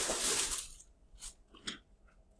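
A noisy rustle, like handling paper or a wrapper close to the microphone, fading out about a second in, then three small sharp clicks.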